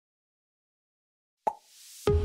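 Dead silence, then about one and a half seconds in a sharp pop followed by a swelling whoosh: the sound effect that opens an animated logo outro.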